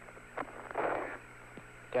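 Open Apollo air-to-ground radio channel between exchanges: steady static hiss and low hum, with a short faint burst of noise about a second in.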